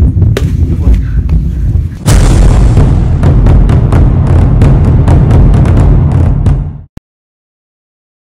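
A dramatic trailer-style intro sound effect: a sudden loud boom about two seconds in, then a deep rumbling bed with many sharp crackles, which cuts off suddenly about seven seconds in. Before it, a low rumble.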